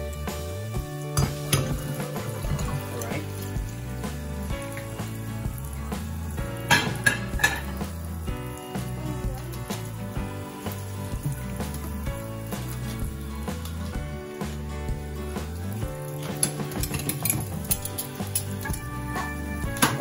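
Ceramic bowls and metal spoons clinking against each other and the stainless-steel sink as they are washed, with a few sharp clinks about seven seconds in and more near the end. Background music plays throughout.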